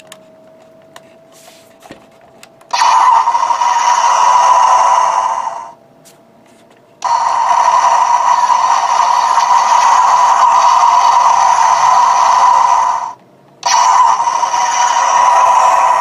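Built-in electronic sound module of a Revell 1/4000 Star Destroyer model playing a spaceship engine sound effect through its small speaker, thin with almost no bass. It comes on about three seconds in, after a few faint button clicks, and plays in three loud stretches broken by two short pauses.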